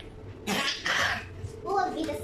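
A person coughs once, a short breathy burst about half a second in, and a child's voice starts near the end.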